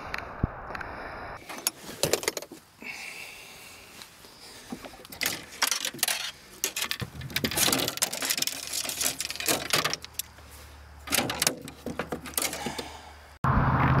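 Fishing rod and reel handled against the side of a metal boat: irregular bouts of clicking, knocking and rattling with short gaps between them.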